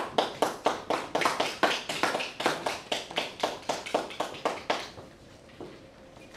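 Brief applause from a small group of people: sharp, distinct claps at about five a second that die away about five seconds in.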